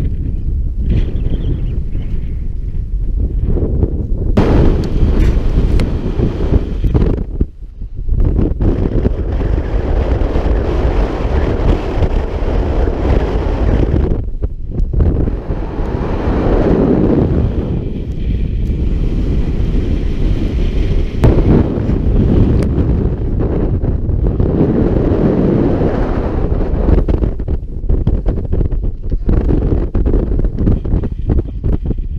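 Strong wind buffeting the camera's microphone in loud, gusting rumbles, with a few brief lulls.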